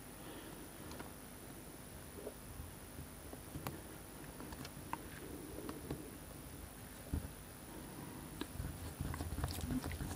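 Faint, sparse clicks and scrapes of two small screwdrivers working the tiny screws of a watch bracelet link, with soft handling noise between them.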